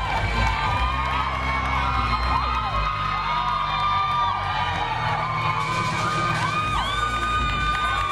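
Audience cheering, with many high voices screaming and whooping over each other at once.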